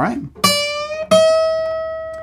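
Acoustic steel-string guitar: a high D is plucked about half a second in and bent a whole step, its pitch rising toward E, then an E is plucked about a second in and left ringing, fading slowly.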